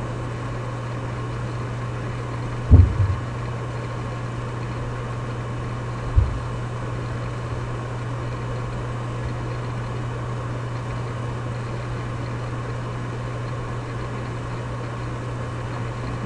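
Steady low background hum, with two brief low thumps about three and six seconds in.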